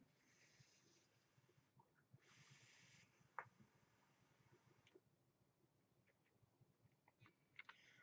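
Near silence, with two faint airy hisses, each about a second long, as a long drag is drawn through a dripping atomizer on a box mod fired at 37.5 watts. A single faint click comes about halfway through.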